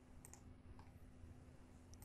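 Near silence: room tone with a steady low hum and a few faint computer mouse clicks, two close together near the start, a softer one a little later and another at the end.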